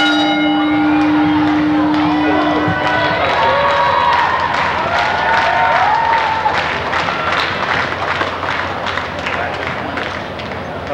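A wrestling ring bell, struck once, rings out and fades away over about the first three seconds; its tone signals the start of the match. Then comes crowd noise with shouts and yells from the audience.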